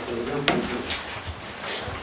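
Sheets of paper being handled and shuffled on a table, with one sharp knock about half a second in and a few fainter rustles after it.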